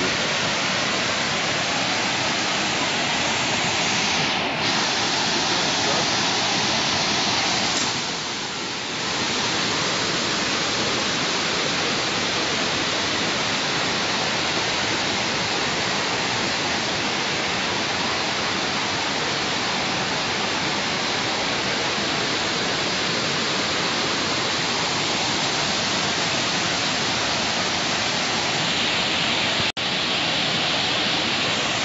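Water rushing steadily over a low stepped river weir, an even roar of cascading water, briefly a little softer about eight seconds in.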